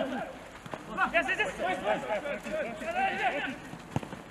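Several men's voices shouting and calling out over one another during a football drill, with a single knock at the very end.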